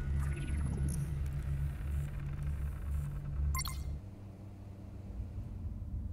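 A deep, steady bass drone from a promo's logo sting, with a short falling swoosh near the start and a brief click about three and a half seconds in. The drone stops about four seconds in, leaving a faint low hum.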